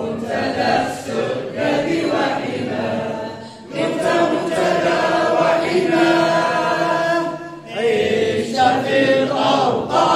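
A crowd of men singing an anthem together in unison, in long held phrases with short breaks about four and eight seconds in.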